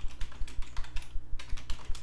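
Typing on a computer keyboard: a quick, uneven run of key clicks, over a steady low hum.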